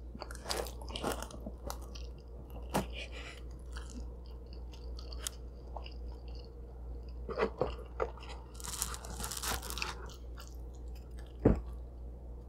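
Close-miked chewing of cheese pizza: quiet wet mouth clicks and small crunches of the crust over a low steady hum, with a louder crunchy stretch around eight to ten seconds in and a single sharp knock near the end.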